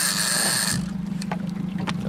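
Fishing reel whirring at a high pitch for a little under a second as line runs on it while a hooked wahoo is played, then a few light clicks, over the steady low hum of the boat's idling engine.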